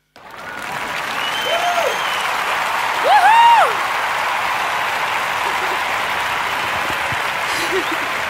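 Applause breaks out suddenly at the end of a song and keeps up steadily, with two short whooping cheers, about one and a half and three seconds in.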